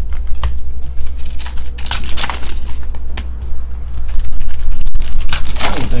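Foil trading-card pack wrappers crinkling and tearing as packs are ripped open and cards handled, a run of short crackles over a steady low hum.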